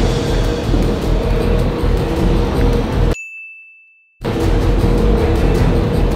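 Steady, loud noise with a constant hum, broken about three seconds in by about a second of silence. In that gap a single high ding rings and fades, and then the noise comes back.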